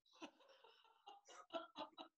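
Near silence, with a few faint short sounds in the second half.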